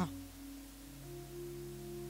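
Soft background music: a held chord of steady tones that changes to a new chord about a second in.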